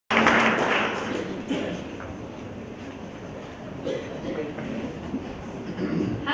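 An indistinct voice in the first second or so, then low room noise with a few faint knocks.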